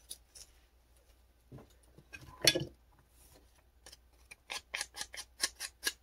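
Small ink pad rubbed along the edges of a paper journal card to brown them, a quick series of short scratchy strokes about three a second from about four seconds in. A single louder clack comes about halfway through.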